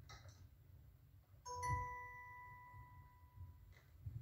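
A single bell-like chime struck once about a second and a half in, ringing clearly and fading away over about two seconds, heard as played through a television speaker over a low hum.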